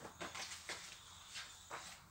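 Clothes being handled: a few short, soft rustles of fabric as a garment is pulled onto a pile of clothing.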